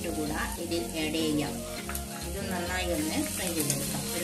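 Sliced onions and cashews sizzling in oil in a non-stick frying pan, stirred with a wooden spatula.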